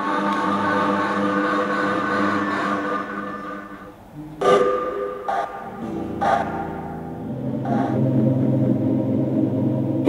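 Electronic sounds from a Kinect-controlled Max/MSP patch played by hand movements. A sustained drone of several steady tones fades away over the first four seconds. A sharp struck sound comes about halfway through, then a few more strikes, and a low steady tone holds to the end.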